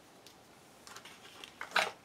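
Tarot cards being handled: a faint rustle, then a brief sharp card snap near the end as a card is pulled from the deck and flipped over.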